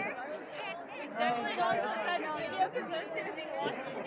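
Several people talking at once, overlapping chatter of spectators with no words standing out.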